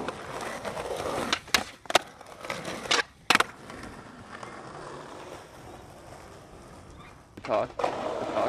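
Skateboard wheels rolling on concrete, with four sharp clacks of the board striking the ground between about one and a half and three and a half seconds in, then quieter, steady rolling.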